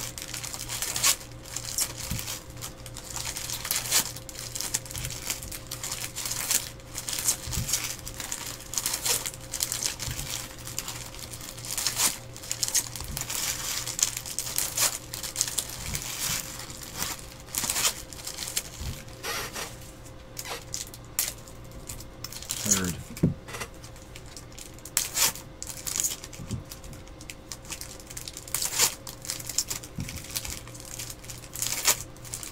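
Bowman baseball card packs being handled by hand: foil wrappers crinkling and tearing, and cards rustling and flicking as they are sorted, in many short, irregular crackles. A faint steady hum runs underneath.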